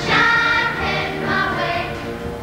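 A song sung by a choir over instrumental accompaniment.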